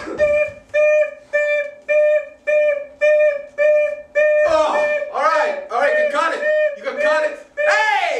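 A man's voice making a beeping sound effect: about nine short notes on one steady pitch, a bit over two a second. About halfway through, these give way to wordless vocal noises that rise and fall in pitch.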